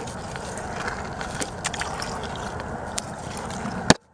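A hand sloshing and scraping in the muddy water of a small rock basin, with scattered small clicks and splashes. A sharp click near the end, then the sound cuts off abruptly.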